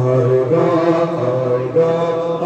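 Male voices chanting a Kashmiri noha, a Muharram lament for Karbala, in long held notes that shift pitch a couple of times.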